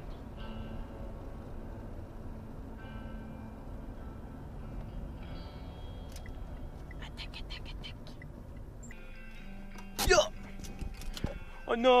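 Steady low rumble of road and engine noise inside a moving car's cabin, which cuts off about nine seconds in.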